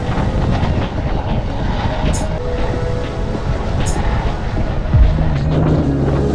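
Steady rush of wind and road noise from riding along with electric skateboards and electric unicycles, under background music.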